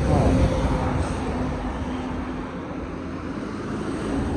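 Road traffic: a car passing close by, its tyre and engine noise loudest at the start and fading over the next few seconds, with more traffic going by beyond.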